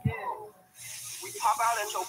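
A person's voice, with a short thump at the start and a steady high hiss coming in just under a second in.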